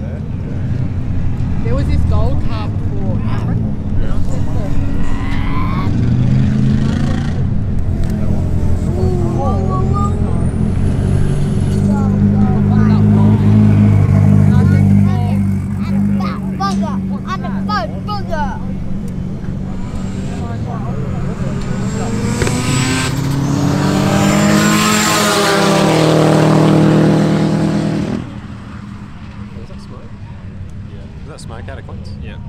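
Race cars' engines idling and revving at the start, then accelerating hard with the engine pitch rising through the gears in a long loud run near the end that cuts off suddenly.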